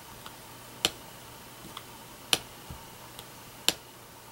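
Small wooden-handled rubber stamp tapped down onto paper, printing red holly-berry dots: three sharp taps about a second and a half apart, with fainter ticks between them.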